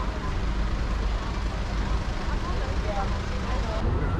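Town street ambience: a steady low traffic rumble with indistinct voices of passers-by chattering, shifting slightly near the end.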